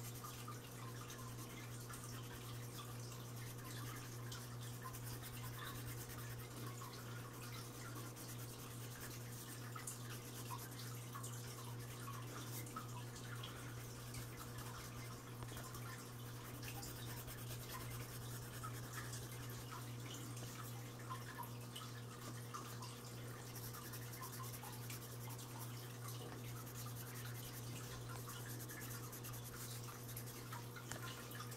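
Colored pencil scratching on paper in quick, repeated shading strokes, faint and continuous over a steady low hum.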